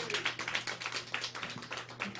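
A small audience of a handful of people clapping, the claps thinning out toward the end.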